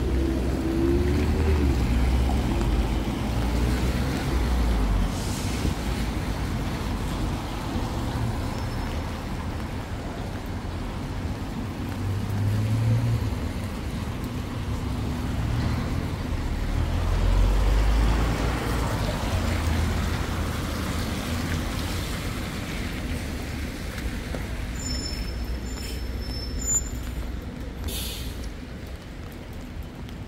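Road traffic on a wet city street: vehicles passing with low engine rumble and the swish of tyres on the rain-soaked road, one louder pass a little past halfway.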